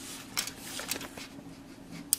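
Plastic model-kit sprue handled by hand, giving a few faint scattered clicks and light rustling, over a faint steady hum.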